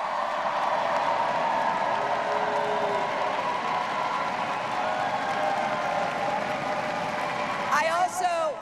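A large arena crowd cheering and clapping without a break, many voices blending into one steady sound that eases slightly near the end.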